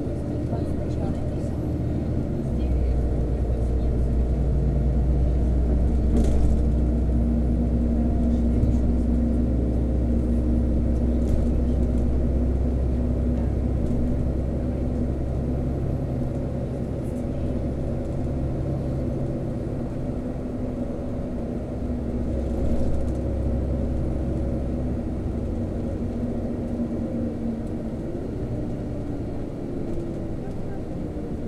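Bus engine and cabin noise heard from inside a moving city bus: a steady low engine drone with held tones. The drone swells about two seconds in and eases off somewhat after about twenty seconds.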